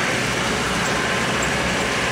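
Jacto K3000 coffee harvester running steadily as it harvests, an even machine noise with a faint steady hum.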